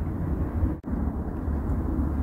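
Steady low outdoor background rumble with no distinct events, broken by a brief dropout a little under a second in.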